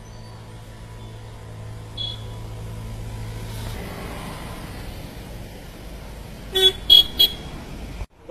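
Road vehicle noise with a steady low hum that gives way to a rougher rumble partway through, then a vehicle horn tooting three times in quick succession near the end, the loudest sounds here.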